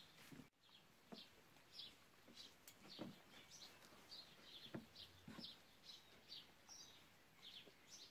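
Near silence, with faint small-bird chirps repeating in the background and a few soft taps and clicks.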